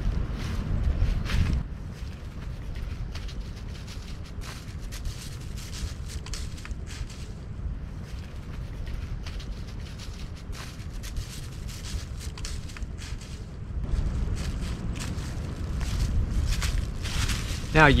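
Footsteps crunching through dry leaf litter, with the trekking pole tips dragging and scraping behind. Louder at first and again toward the end, fainter in between, over a low wind rumble on the microphone.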